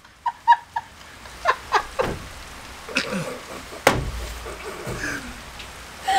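A woman laughing quietly in short breathy bursts, with one sharp click about four seconds in.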